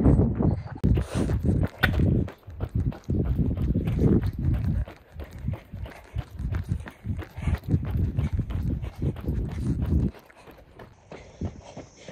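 Running shoes striking asphalt in a quick steady stride, a runner's footfalls heard through a handheld phone, with heavy wind and handling rumble on the microphone that drops away about ten seconds in.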